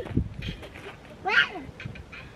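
A person's brief vocal cry, with its pitch bending, about a second and a half in, over faint scattered scuffs and clicks.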